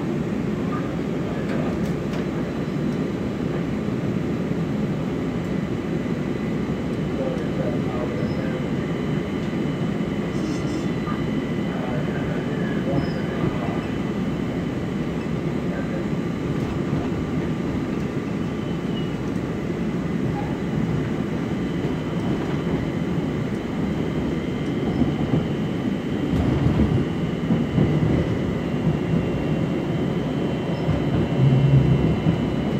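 Interior ride noise of a light rail car running along the track: a steady rumble of wheels and running gear with faint steady high whining tones above it. The rumble grows louder over the last few seconds.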